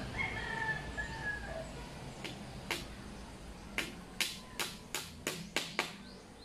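A rooster crows once at the start, a call of about a second and a half. Then come about nine sharp knocks of a hammer on the bamboo coop frame, coming quicker toward the end.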